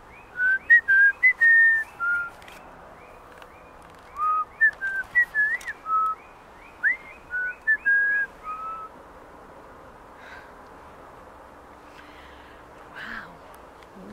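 A woman whistling a calling tune of short notes, some sliding up or down, in two runs: a brief one at the start and a longer one from about four to nine seconds in.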